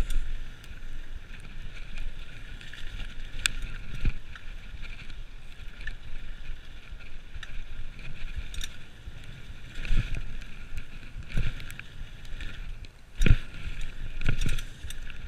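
Mountain bike ridden fast down a dirt trail: a steady rumble of tyres and wind on the microphone, with the bike rattling and knocking sharply over bumps. The loudest knock comes about a second before the end.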